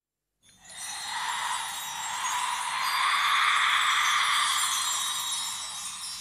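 A brief silence, then the intro of a 1990s Bollywood film song fades in with a shimmering wash of chimes that swells over the next few seconds.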